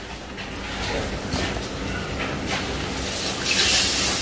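Liquid poured from a bowl into a hot frying pan of tomato sauce, sizzling. The hiss swells up loudly about three seconds in, after a few faint handling knocks.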